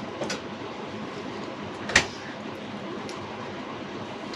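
Steady low hiss in a small kitchen, with one sharp click about halfway through.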